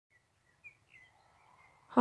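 Several short, faint bird chirps scattered over a very quiet outdoor background.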